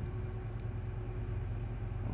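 Semi truck's diesel engine idling: a steady low hum with a faint, even tone above it.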